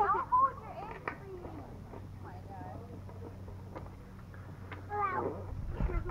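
A young child's voice in a few short, high vocal sounds right at the start and again about five seconds in, with a quiet stretch between holding only faint taps and a low steady hum.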